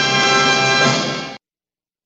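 Orchestral trailer music holding a sustained closing chord. It fades near the end and then cuts off abruptly.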